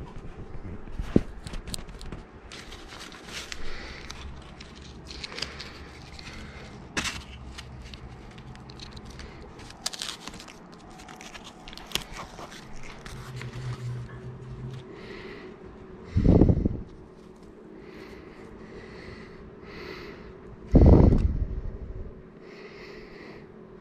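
Adhesive vinyl and its backing sheet being handled and pressed onto a clear acrylic cutout by hand: irregular scraping, crackling and clicking of film and paper under the fingers. Two loud, low thuds come about two-thirds of the way through and near the end.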